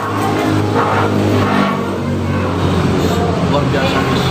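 Indistinct background voices over a low, steady engine rumble from a passing road vehicle.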